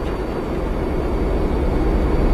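A low rumbling noise with no tune in it, growing slowly louder, like an aircraft or train drawing near.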